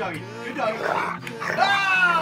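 Background music with a steady low note, and a man's high-pitched whooping yell near the end.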